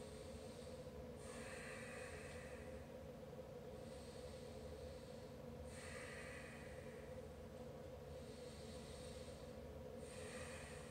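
A man's slow, deep breathing, faint: about two full breaths in and out, each breath a soft rush lasting about a second and a half. It comes while he holds a yoga stretch.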